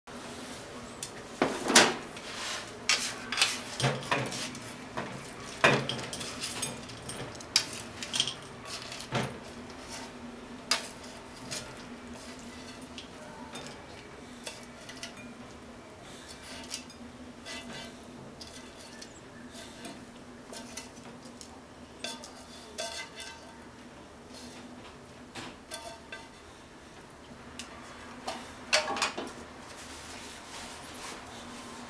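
Wooden chopsticks clicking and tapping against a ceramic bowl as crisp fried chicken pieces are placed in it. The clinks come thick in the first ten seconds, thin out, then come in a short burst again near the end, over a faint steady hum.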